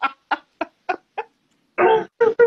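A woman laughing hard in short, rhythmic breathy pulses, about three a second, that trail off after about a second. A louder burst of laughter starts near the end.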